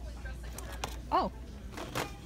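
A short spoken "oh" about a second in, with a few sharp clicks, over a low steady hum from the store.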